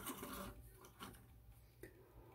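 Faint handling of a plastic Transformers Earthrise Wheeljack figure: a soft rub as it is gripped, then small plastic clicks about a second in and again near the end.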